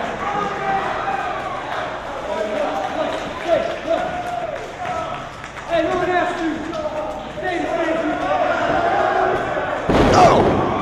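Voices calling out across an arena hall over a few thuds on a wrestling ring, ending with a heavy slam of a body landing on the ring mat from a suplex.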